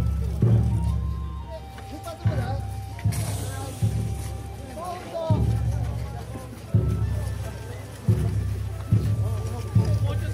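A deep drum struck repeatedly, about once a second at an uneven pace, each beat booming and then fading. Voices call out over it.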